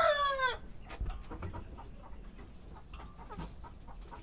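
The end of a rooster's crow: a long held call that drops away and stops about half a second in. After it come only faint scattered clicks and knocks.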